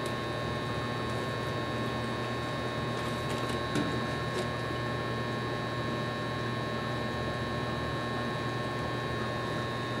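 Steady mechanical hum with faint, thin high tones running under it, with one faint knock a little before four seconds in.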